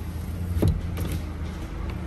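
Rear-door power window of a 2018 Chevrolet Sail running, its electric motor humming as the glass moves, with a short sharp knock about half a second in.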